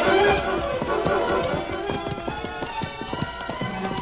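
Radio-drama sound-effect hoofbeats of a horse moving off at a run, under a music bridge.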